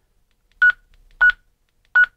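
Retevis RB27B GMRS radio's key beep: three short single-pitched beeps a little over half a second apart, one for each press of the arrow key as it steps down through the CTCSS tone codes.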